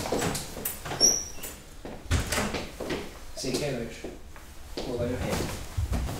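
A door being opened and closed, with the click of its handle and latch about a second in.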